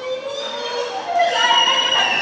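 Actors' raised, drawn-out voices without clear words, sliding up and down in pitch, with a high note held through the second half.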